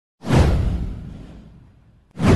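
Whoosh sound effect for a logo intro: a sudden swoosh with a deep boom underneath that sweeps down in pitch and fades away over about a second and a half.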